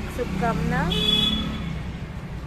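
A woman's voice over a steady hum of road traffic, with a brief high-pitched tone about a second in.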